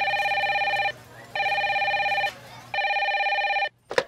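Desk telephone ringing: three electronic warbling rings of about a second each with short gaps between them, then a brief click near the end.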